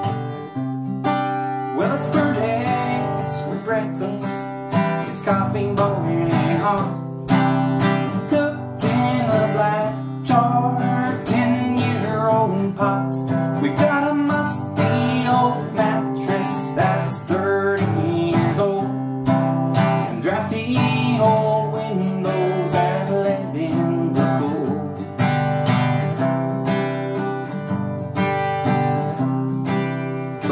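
Acoustic guitar strummed in a steady country rhythm, playing an instrumental break between the sung verses of a country song.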